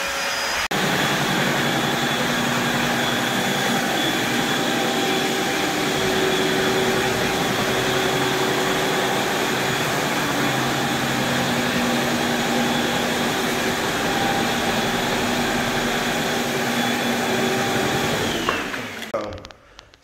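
A motorised floor-scrubbing machine running on a wet hardwood floor, giving a loud, steady motor whine and hum. It winds down and stops near the end.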